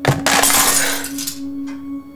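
Glass breaking: one sharp hit, then about a second of bright clattering that fades away.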